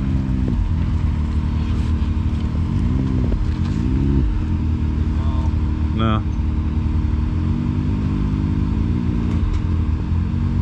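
Side-by-side UTV engine idling, with short revs that rise and fall back as it noses slowly between trees. The revs come about half a second in, twice around three to four seconds in, and again in the later seconds.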